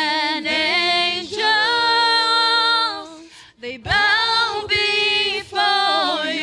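Worship singers, women's voices leading with a man's, singing a slow worship song together through microphones, unaccompanied. A brief pause for breath comes a little past halfway.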